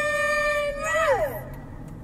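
A voice holding one long, high sung note, then sliding down in pitch and stopping about a second and a half in. A low hum of the moving car's cabin remains underneath.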